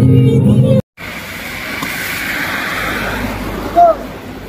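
Background music that stops abruptly about a second in. After the cut comes steady outdoor street noise with a vehicle running, and a brief loud rising sound near the end.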